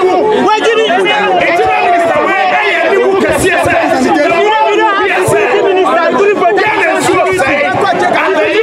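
Speech: a man talking loudly into a bunch of microphones, with other voices chattering around him.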